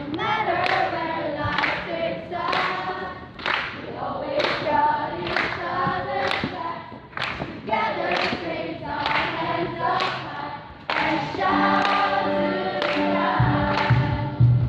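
A large choir of students singing together, with a steady beat about once a second under the voices.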